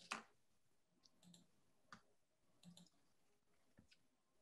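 A handful of faint, scattered computer clicks over near-silent room tone, the first the loudest, as the poll link is switched on.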